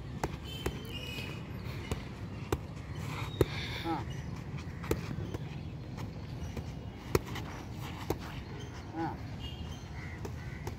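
Boxing gloves punching handheld focus mitts: about a dozen sharp slaps at irregular intervals, some single and some in quick pairs.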